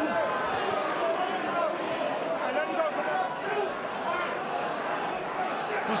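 Arena crowd of many voices shouting and cheering at a steady level during a heavyweight boxing bout.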